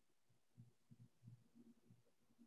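Near silence: room tone with a few faint, irregular low thuds.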